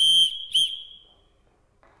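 A hand-held signal whistle blown in a pattern of a long blast and then a short one, its high tone trailing off about a second in. It is a call signal summoning one of the household servants.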